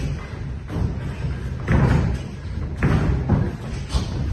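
Boxing gloves thudding as punches land during sparring, with two heavier thuds about a second apart in the second half and a sharp smack just before the end.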